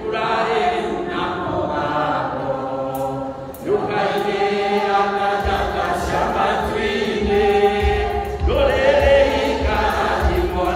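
Congregation singing a hymn in Kikuyu together, led by a man's voice, in long held phrases. A steady low beat joins about halfway through.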